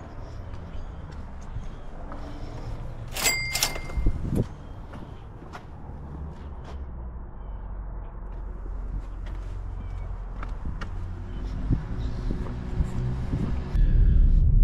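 Footsteps and handling noise as a delivery order is carried to a back door and set down. About three seconds in come two sharp clicks, one leaving a brief ringing tone, followed by a low thump.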